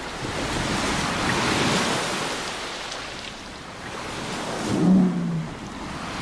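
Waves washing onto a rocky shore, the surf swelling and falling back. About five seconds in comes a short, low tone.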